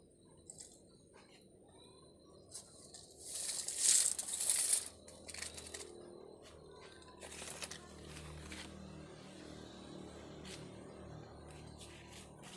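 Plant leaves rustling and crinkling against the phone as it is moved in among large leaves, loudest for about a second and a half around four seconds in, with a few light handling clicks. A faint low hum follows in the second half.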